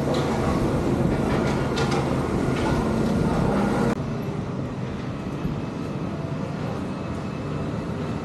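Demolition excavator's engine running, with a few short crunching noises mixed into a dense rumble. About four seconds in this cuts off suddenly to a quieter, steady low rumble.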